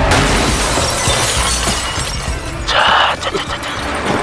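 Film sound effects of a car crash: a sudden loud smash of crunching metal and shattering glass, with a second, sharper burst of shattering about three seconds in.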